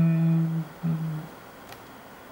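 A man's voice holding the drawn-out final note of a chanted northern Thai jo'i verse. The note ends about half a second in, and a shorter held note follows near the one-second mark.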